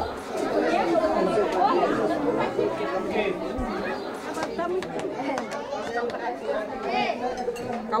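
Chatter of many people talking over one another, with scattered light clinks of serving spoons on metal trays and plates.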